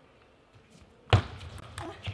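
A single sharp thud about a second in, then a fainter knock just before the end.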